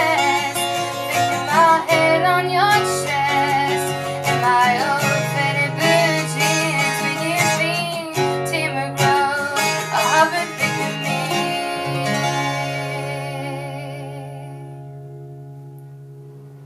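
Acoustic guitar strummed, with a woman singing the last phrases wordlessly over it, closing a song. From about twelve seconds in, the final chord rings on and fades away.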